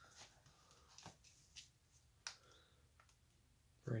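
Faint handling of a binder page of plastic card sleeves being turned: a few soft clicks and rustles, otherwise near silence.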